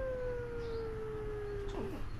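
Young baby's long, drawn-out cry on one held note that slowly falls in pitch, ending with a short downward slide near the end.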